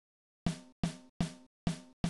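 A trap snare drum one-shot sample played over and over, a sharp crack with a short ringing tail, about every 0.4 s.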